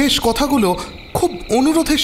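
Steady chirring of crickets, laid as a night-time ambience, under a voice speaking.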